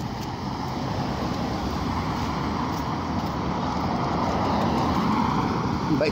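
Road traffic on a busy street: a steady noise of passing cars' tyres and engines that swells a little in the second half.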